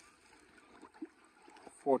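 Faint sloshing of a wooden stick stirring fermenting comfrey liquid in a plastic drum, with a small splash about a second in.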